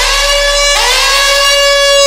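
Jungle Dutch dance track intro: a loud, buzzy siren-like synth lead, each note sliding up into a long held tone, once at the start and again about three-quarters of a second in.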